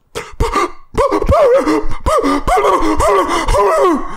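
A man's voice making a loud wordless, high, wavering sound, its pitch swooping up and down over and over, after a few short breathy bursts: a vocalized stand-in for the segment's name.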